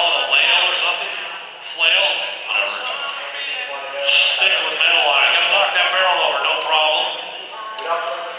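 Speech: a man talking, echoing in a large indoor arena.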